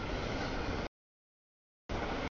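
Freight train rolling past a grade crossing, heard as plain noise in chopped fragments: it cuts off abruptly just under a second in, drops to dead silence, and cuts back in near the end.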